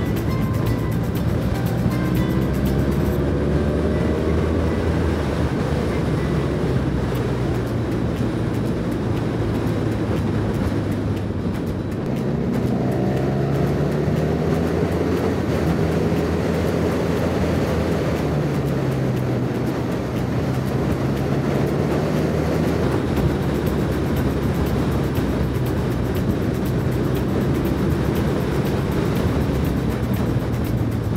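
BMW F800R's 798 cc parallel-twin engine running under way, with the steady rush of wind and road. Its pitch rises as it accelerates a few seconds in and again about twelve seconds in, then holds.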